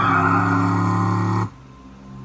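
Car tyres squealing over film music, cutting off abruptly about a second and a half in. A quieter, steady low musical tone follows.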